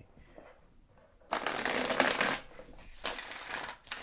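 A deck of tarot cards riffle-shuffled on a table: two quick rattling riffles, the first starting about a second in and lasting about a second, the second shorter near the end.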